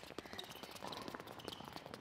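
Faint, quick, irregular footsteps of several players stepping rapidly through an agility ladder on an indoor court: a fast run of light shoe taps.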